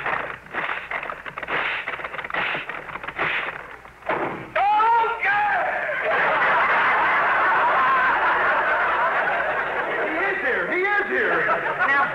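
A paper bag blown up with a series of short puffs, then popped with a sudden bang about four seconds in. Long studio-audience laughter follows.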